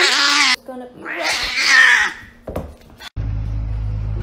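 A cat yowling twice: a short wavering cry, then a longer, harsher one. About three seconds in, a cut brings in a steady low hum.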